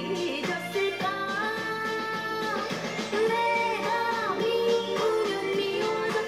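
A woman singing a Korean song with band accompaniment, holding long notes twice, played back through a television's speaker.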